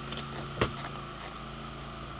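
Console shift lever of a 1988 Ford Mustang GT's four-speed automatic overdrive transmission being moved by hand, with one sharp click a little over half a second in as it drops into a gear position. A steady low hum runs underneath.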